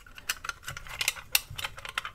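Light, irregular clicks and taps, about eight in two seconds, from a diecast Matchbox King Size K5 racing car transporter being handled as its hinged rear ramp is worked open and shut.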